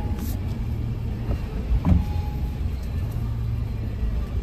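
Steady low rumble of a car heard from inside its cabin, with a single brief knock about two seconds in.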